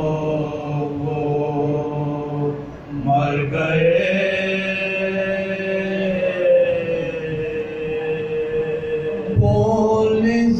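Men's voices chanting a marsiya (Urdu elegy) without instruments, in long drawn-out held notes that bend slowly in pitch. The phrase breaks briefly about three seconds in, and a new phrase starts near the end.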